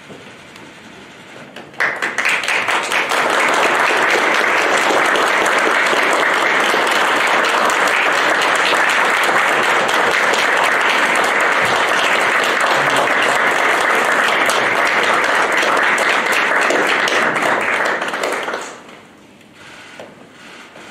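Applause from the people in the room, which starts abruptly about two seconds in, holds steady for about fifteen seconds and dies away near the end.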